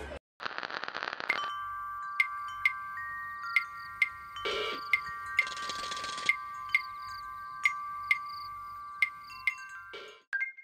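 A chime-like jingle of held ringing tones with light ticks about twice a second, opening with a short rattling burst and with two brief hissing swells in the middle.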